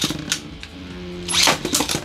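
Beyblade Burst spinning tops whirring on a plastic stadium floor with a steady multi-tone hum. A sharp clash is heard about one and a half seconds in, as the two tops collide.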